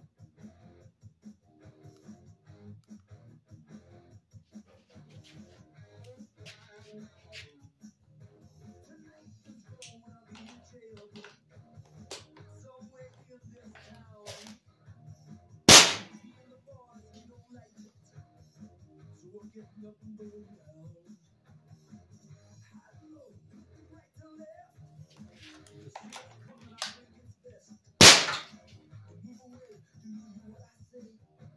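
Walther Reign PCP bullpup air rifle firing heavy pellets through a chronograph: two sharp cracks about twelve seconds apart, the loudest sounds here. Lighter clicks come before each shot as the rifle is handled.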